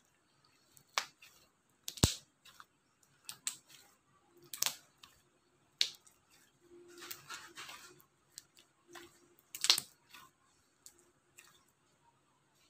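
Glossy slime being pressed and kneaded by hand, giving about six sharp wet pops and clicks, the loudest about two seconds in and just before ten seconds, with a longer stretch of crackly squishing in the middle.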